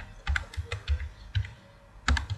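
Computer keyboard typing: a handful of separate, irregularly spaced keystrokes.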